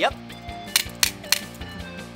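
Metal barbecue tongs clacked shut three times, about a third of a second apart, over background music.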